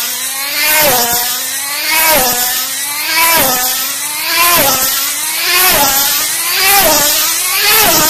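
Tethered model race car's two-stroke glow engine running flat out around a circular track. Its pitch swoops down each time it passes, a little under once a second. The engine note climbs lap by lap as the car accelerates from about 97 to 135 mph.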